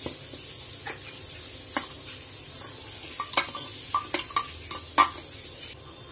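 Kitchen sounds: a steady hiss that cuts off near the end, with several sharp clinks of metal utensils and pots, the loudest about five seconds in.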